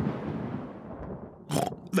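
Cartoon thunder rumbling and dying away over about a second and a half. It is the tail of a clap that came after a count of five, the sign that the storm is moving away.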